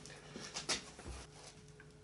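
A few sharp clicks and knocks, the loudest about two thirds of a second in, then a dull low thump about a second in, over a faint steady hum.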